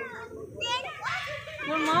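Young children's voices calling out and chattering during play, with one high, rising call a little over half a second in.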